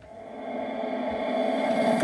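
The intro of a played-back electronic song: a sustained chord swelling up from silence over about a second and a half, then holding steady.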